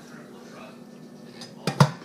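Two sharp knocks close together near the end, from kitchenware being handled, over a faint steady hum.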